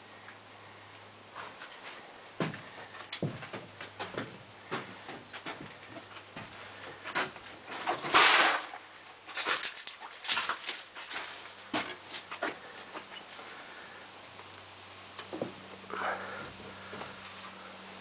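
Footsteps and scattered knocks and clicks on the stripped bus body's bare metal floor and loose debris, with one louder rushing scrape about eight seconds in, over a steady low hum.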